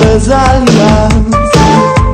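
Instrumental passage of a rock song played by a band: drums and bass under a melodic lead line of held notes with short slides between them.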